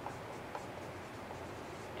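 Dry-erase marker writing a word on a whiteboard: faint strokes of the marker tip on the board.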